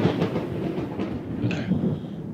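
A dense, steady noise, part of a music video's opening sound playing through a computer, just before the song's guitar starts.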